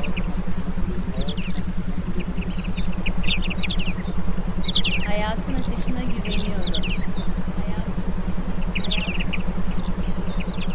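Meditation background track: a steady low hum pulsing rapidly, about eight pulses a second, under runs of short high chirps that come and go, with one longer falling run of chirps about halfway through.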